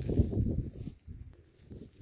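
Close-up biting and chewing of a soft crumpet right at a phone microphone, with low rumbling over it, dying away about a second in.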